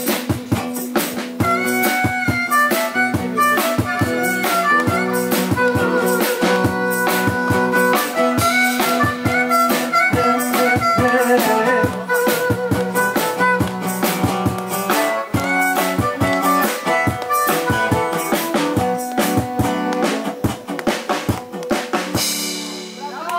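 Harmonica playing a melody over a strummed acoustic guitar and a drum kit, an instrumental break in a live blues-rock song with no singing.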